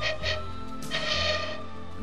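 A plastic-tube pan flute pipe blown twice, each blow a short, breathy, airy note, the second one longer, over steady background music.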